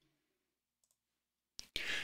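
Near silence for most of the moment, then a brief click about a second and a half in, followed by faint low noise.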